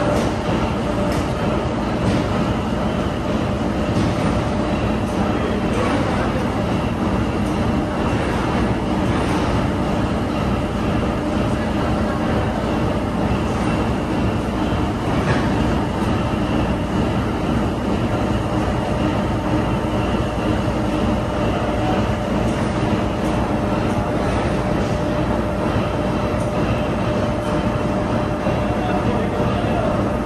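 Factory machinery running steadily: a continuous loud rumble with a faint steady hum and a few faint clanks.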